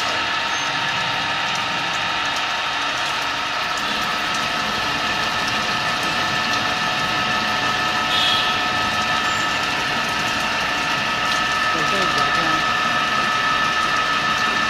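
CNC milling machine slot-milling a metal ring: the spindle-driven end mill cuts steadily, a continuous whine of several held tones over a hiss of cutting noise, with a brief brighter scrape about eight seconds in.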